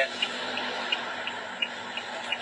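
Steady hum and noise inside a car cabin, with a light, regular ticking about three times a second.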